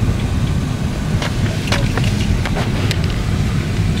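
Steady low rumble of a car heard from inside the cabin, with a few light clicks in the middle.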